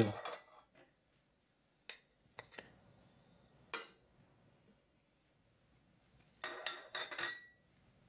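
A kitchen utensil tapping and clinking against the Thermomix's stainless-steel mixing bowl as butter is put in: a few sharp separate taps, then a quick cluster of clinks near the end with a brief metallic ring.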